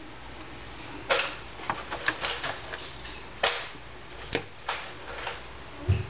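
Irregular clicks and light knocks of a refrigerator water inlet valve, its plastic connectors and wires being handled, over a low steady hum.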